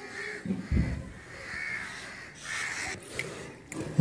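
A crow cawing three times, with a low thump about a second in.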